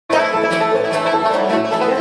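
Bluegrass band playing the instrumental lead-in to a song: banjo, acoustic guitars and mandolin over an upright bass keeping a steady beat.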